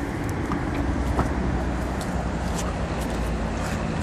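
Power liftgate of a 2016 GMC Acadia unlatching and rising under its electric motor: a steady low hum, with a couple of faint clicks in the first second or so.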